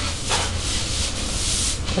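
Broom bristles swishing across the floor in sweeping strokes, a rasping scratch with a low rumble underneath.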